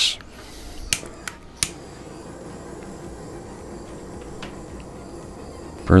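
Handheld kitchen blowtorch being lit: a short hiss of gas and a few sharp igniter clicks in the first two seconds, then the flame burning with a steady hiss.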